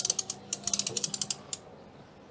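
Patio umbrella crank being wound, its ratchet clicking rapidly in two runs with a short pause between, stopping about a second and a half in.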